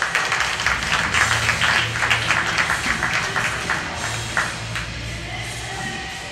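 Audience applauding, with music playing underneath. The clapping is densest over the first few seconds and thins out after about four and a half seconds.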